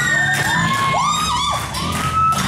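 A live rock band with electric guitars, bass and drums playing loudly in a large hall, with sustained, gliding high notes over it and the audience cheering.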